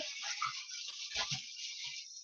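Packaging rustling and crinkling with a few light knocks, as parts are handled in a model-aircraft kit box.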